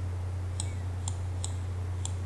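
Three sharp clicks of computer keyboard keys being pressed, spaced about half a second apart, over a steady low electrical hum.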